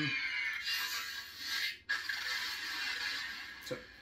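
Crystal Focus 10 (CFX) lightsaber soundboard playing the Kyber Revolution sound font: the retraction sound falls slowly in pitch and cuts off just before two seconds in, then the broken, unstable preon effect leads into the ignition and blade hum.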